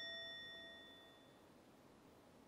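The ring of a single struck bell dying away, several clear tones fading out slowly until they are almost gone.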